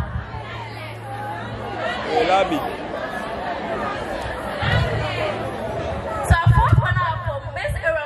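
Crowd chatter: several people talking at once, louder from about six seconds in.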